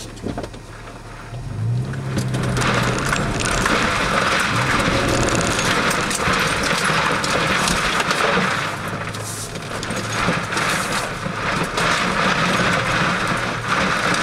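Toyota FJ Cruiser's V6 engine picking up about a second and a half in, then pulling the truck slowly over a rocky trail, with tyres crunching and grinding over loose stones and gravel, heard from inside the cab.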